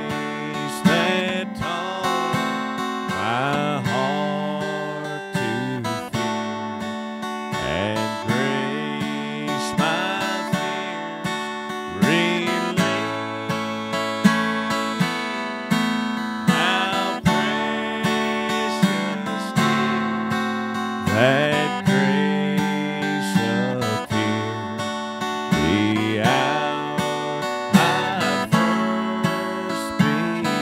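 Acoustic guitar strummed in a steady, unhurried rhythm, playing a hymn tune.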